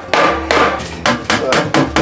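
A claw hammer striking a wooden block laid on top of a sheet-metal stove pipe, about five or six blows that come faster toward the end. The blows tap the pipe section down to seat its snap-lock seam flush.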